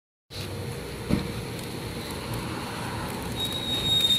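Steady background noise of road traffic that starts abruptly a fraction of a second in, with a single sharp knock about a second in and a faint thin whistle near the end.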